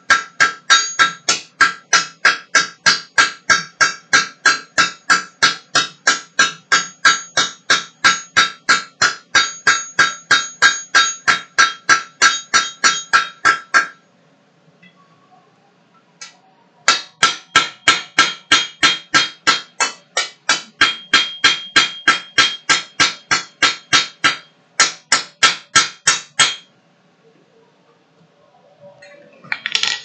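Blacksmith's hand hammer striking hot steel on an anvil in steady blows about three a second, each with a ringing tone, drawing out a forged leaf. The hammering stops for a few seconds about halfway, starts again, and stops near the end.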